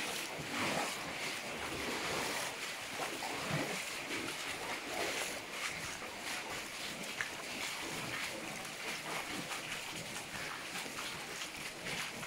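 Footsteps wading through water in a concrete tunnel, with scattered splashes and the rustle of clothing rubbing against the microphone.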